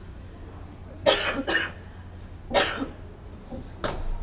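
A person coughing: a double cough about a second in, another cough midway, and a short one near the end, over a steady low hum.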